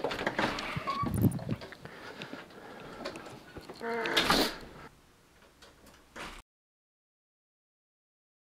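An interior door's knob is turned and the door is opened and pulled shut, with several knocks and latch clicks in the first second and a half. A short pitched squeak comes about four seconds in, and the sound cuts off completely after about six seconds.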